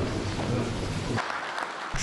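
Applause from a room of people clapping. A low rumble under it drops away about a second in, leaving the clapping clearer.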